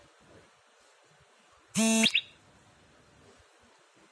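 A short, loud buzzer-like beep about two seconds in, lasting about a third of a second, ending in a brief upward chirp.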